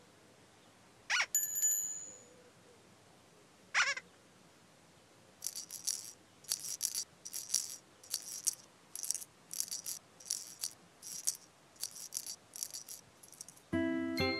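Cartoon-style sound effects for Igglepiggle: two quick swooping squeaks, about a second and about four seconds in, the first followed by a bright bell-like ring, then a light rhythmic rattle of shaker-like strokes about twice a second. Tinkly mallet music comes in at the very end.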